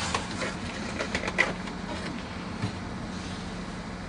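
Plastic water distribution tube of an undercounter ice machine being pulled out by hand, with a few light clicks and knocks in the first second and a half and one more later, over a steady low hum.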